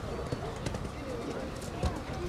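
Hoofbeats of a horse cantering over a soft dirt show-jumping arena as it lands from a fence and goes on, a few dull thuds at an uneven beat. People talk in the background.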